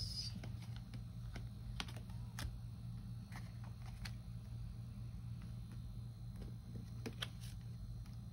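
Tarot cards being picked up, moved and laid down on a table: scattered light clicks and taps of card against card and card on table, over a steady low hum.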